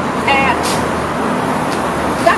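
Steady road-traffic noise, a continuous rush of passing vehicles.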